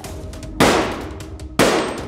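Two loud gunshots about a second apart, each with a long fading tail.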